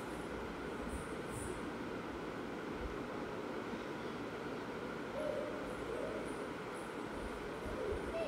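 Hands kneading and pressing a lump of dough in a steel plate, soft and faint, with a few low knocks, over a steady rushing background noise. A brief faint tone is heard about five seconds in.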